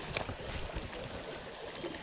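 A small, shallow creek running steadily over riffles, with one faint tick just after the start.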